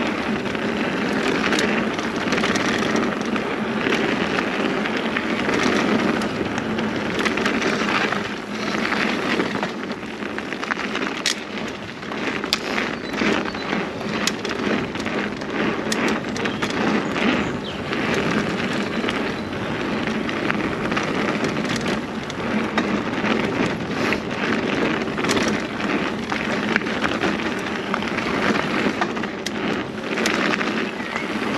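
Mountain bike ridden along dry dirt singletrack: knobbly tyres rolling over the dirt in a steady crackling rush, with frequent sharp clicks and rattles from the bike over the rough ground.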